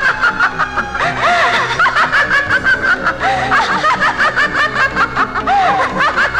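A woman laughing loudly and without a break, in rapid pulses about five a second, over background film music.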